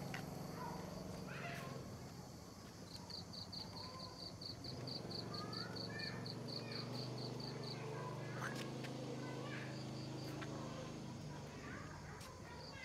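Outdoor evening ambience: an insect chirping in a steady train of short high pulses, about four a second, for several seconds, then again briefly near the end, over a low steady hum, with a few brief bird chirps in the middle.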